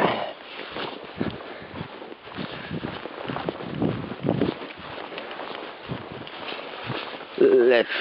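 Footsteps walking across a grass lawn: an irregular series of soft thuds with rustling.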